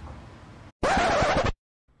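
A loud record-scratch sound effect lasting under a second, inserted at an edit. It follows the outdoor background noise breaking off abruptly and stops dead into silence.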